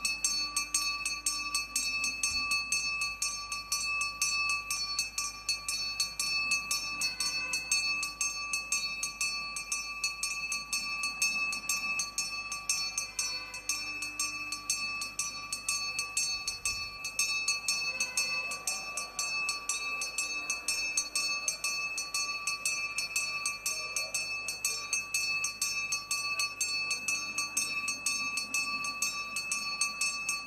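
A temple hand bell rung continuously with rapid, even strokes, its steady ringing tones sustained throughout.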